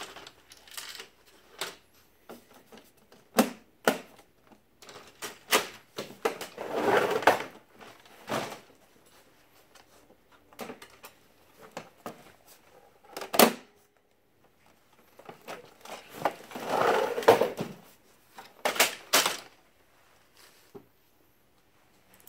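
Hands handling and fitting the plastic parts and covers of an HP Color LaserJet Pro printer: irregular sharp clicks, knocks and snaps, with two longer scraping, sliding sounds, about a third of the way in and again about three-quarters through.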